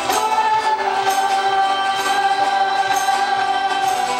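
Live worship band performing a contemporary Christian song: women's voices hold one long sung note over acoustic guitar, bass and keyboard, with a steady light beat from a cajón.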